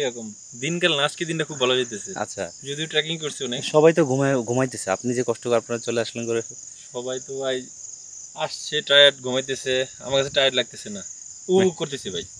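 A steady, high-pitched chorus of insects runs without a break under men talking.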